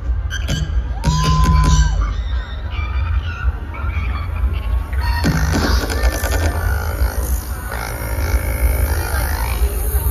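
Live electronic pop music played over a festival PA and heard from within the crowd, with a constant heavy bass and a short held high tone about a second in.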